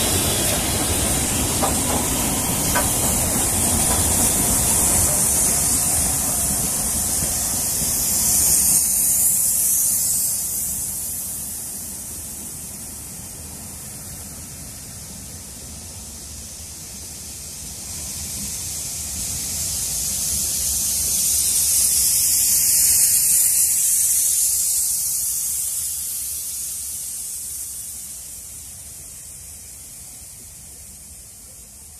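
Double-headed LMS Black 5 steam locomotives and their train passing. The locomotives' rumble fades over the first ten seconds, then the coaches roll by with a loud steam-like hiss that swells twice and dies away near the end.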